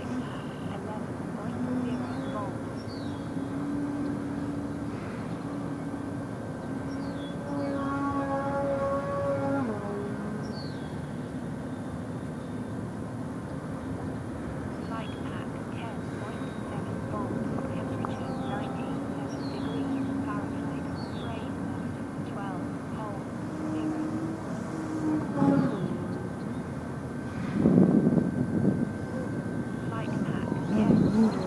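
Electric motor and propeller of a radio-control aerobatic plane in flight, the drone wavering up and down in pitch as the throttle changes. It grows louder and rougher near the end as the plane comes in low.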